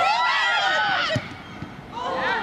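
Raised voices of players and spectators shouting during a football match, loudest in the first second, with a short dull thump about a second in.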